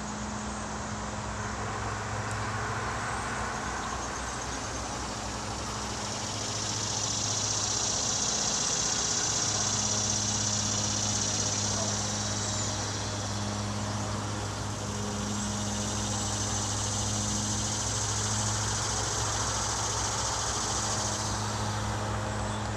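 CSX GE diesel locomotives running as they approach slowly, a steady low engine hum that grows louder about six seconds in.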